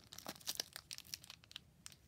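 Foil wrapper of a Pokémon Scarlet and Violet booster pack being torn open and crinkled by hand: a quick, faint run of crackles and rips.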